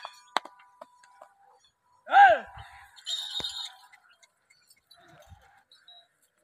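A man gives one loud, sharp shout, 'eh', with a falling pitch about two seconds in, driving the bulls hauling a stone block. Light metallic clinks come at the start, and a brief high jingle follows just after the shout.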